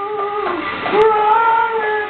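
A man singing high held notes into a handheld microphone: one note slides down and breaks off about half a second in, then a new long note is held, wavering slightly.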